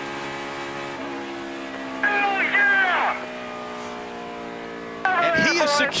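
In-car sound of a NASCAR Cup Series Ford's V8 engine running at a steady speed after the finish. A man's voice shouts briefly about two seconds in and again near the end.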